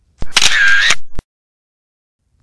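Edited-in camera shutter sound effect, about a second long, ending in a sharp click.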